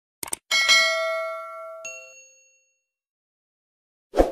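Subscribe-button animation sound effects: a quick double mouse click, then a bright bell-like ding that rings out, with a second ding just under two seconds in, both fading away within about two seconds.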